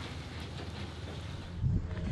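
Pickup truck engine running as it tows a loaded dump trailer, under a steady hiss of outdoor noise; a louder low rumble comes in near the end.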